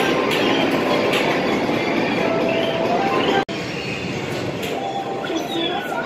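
Busy games-arcade din: electronic beeps and short falling tones from the game machines over a steady hubbub of voices and noise. The sound cuts out for an instant about halfway through.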